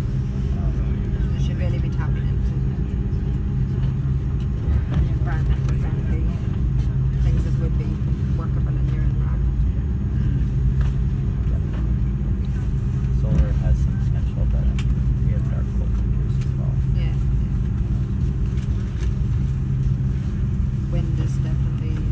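Cabin noise of an Airbus A330-243 taxiing: a steady low rumble from its Rolls-Royce Trent 700 engines and the wheels rolling on the taxiway, with faint voices in the cabin.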